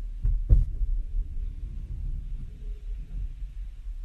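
Steady low rumble with two short knocks about half a second in, the second louder.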